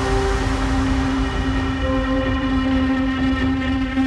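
Electronic music in an ambient passage: a held synth chord of several steady tones over a low, rumbling drone, with no beat.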